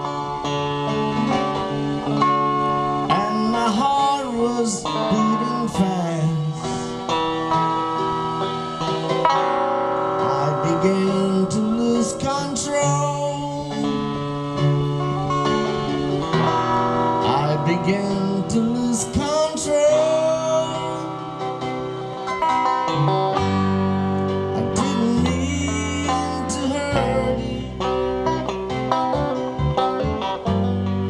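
Electric guitar, a Stratocaster-style solid-body, playing a melodic instrumental passage over a backing track, with bending notes. A deeper bass part comes in for the last third.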